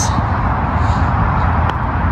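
Wind rumbling steadily on the microphone on an open putting green, with a faint tap of a putter striking a golf ball near the end.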